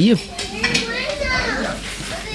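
Speech: a man's short spoken word at the start, then softer voices talking in the background.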